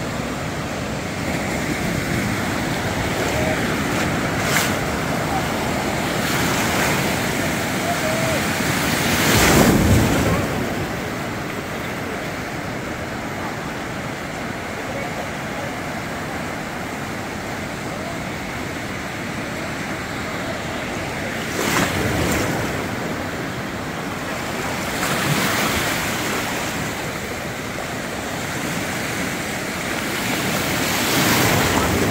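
Lake Superior surf breaking and washing up the beach, a steady rush that swells several times, loudest about a third of the way in. Wind buffets the microphone.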